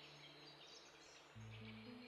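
Near silence: faint room tone, with faint low steady tones coming in about two-thirds of the way through.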